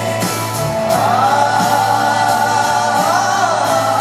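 Live rock band playing with guitars and singing, recorded from the audience at a stadium concert. A held sung line glides up about a second in and slides back down near the end.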